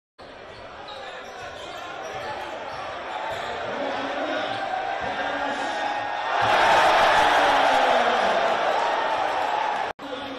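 Crowd in a packed gym cheering, the noise building steadily and then surging loudly about six and a half seconds in as a play goes up at the basket, with the hall's echo around it. It cuts off suddenly near the end.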